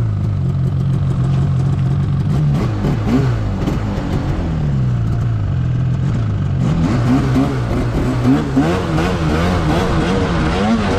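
An Arctic Cat Alpha One two-stroke snowmobile engine runs steadily at first. From about the middle on it revs up and down in quick, wavering swells as the throttle is worked to push the sled through deep snow.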